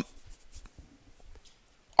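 Quiet room tone with a few faint ticks and rustles.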